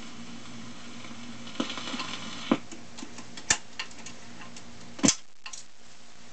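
Admiral record player with the 78 finished playing: a low steady hum and surface hiss, broken by several irregular sharp clicks and knocks, the loudest a double click about five seconds in.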